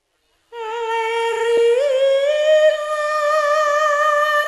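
A woman's solo sung voice holding one long note in a Javanese tayub song, starting about half a second in, sliding up a step partway through and then held, with no gamelan accompaniment heard.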